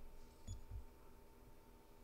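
Near silence: room tone of a large church with a faint steady hum, and two soft low thumps about half a second in.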